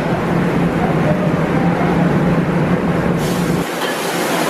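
A machine's motor running with a steady hum and low drone, which cuts off suddenly near the end. A higher hiss starts just before it stops.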